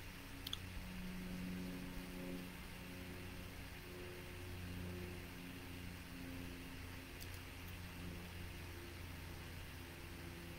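Faint steady low hum of room tone, with a small click about half a second in.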